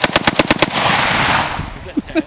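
Saiga 7.62×39 semi-automatic rifle firing a fast string of shots, about eight a second, which stops less than a second in as the ten-round magazine runs dry. A loud rushing noise follows for about a second.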